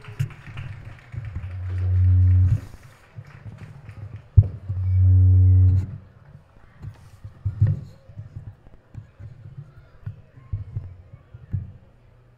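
A low horn sounds two long blasts, each about a second, a few seconds apart, over faint crowd applause.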